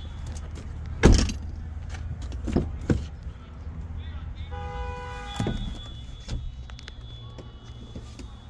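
Doors of a 2020 Ford F-150 crew cab being handled: a loud clunk about a second in as the rear door is unlatched and swung open, then a few lighter knocks. Near the middle, a short steady horn-like tone sounds for under a second.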